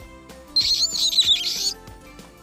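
Bat squeaks: a quick run of high, wavering chirps lasting about a second, over soft background music.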